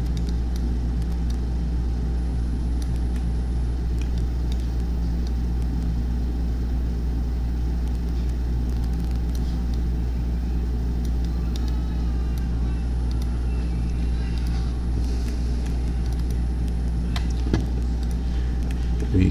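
A steady low hum under constant background noise, with a few faint clicks near the middle and near the end.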